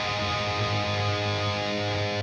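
Electric guitar played through the Fortin Nameless Suite amp-simulator plugin: a distorted chord held and ringing steadily.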